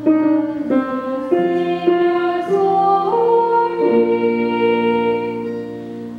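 Music: a slow melody with held notes, a woman singing over guitar and piano.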